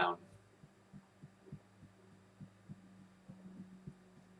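Fingertips tapping on the collarbone point during EFT tapping: faint, soft thuds about three a second over a low steady hum.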